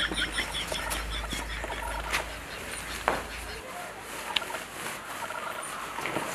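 Birds chirping faintly in the background, with a few light clicks and a low hum that stops about three and a half seconds in.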